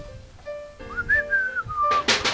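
A single whistled note that starts about a second in, rises, then glides slowly down in pitch, over soft background music.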